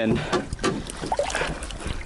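A canoe being pushed and dragged through a shallow, rocky creek: uneven splashing of water with scattered knocks of the paddle and hull, over a low rumble.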